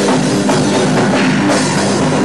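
Powerviolence band playing live and loud, a dense wall of distorted instruments over a drum kit.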